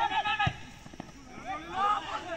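Voices shouting and calling out on a football pitch during play, in short rising-and-falling cries. There is a single thump about half a second in.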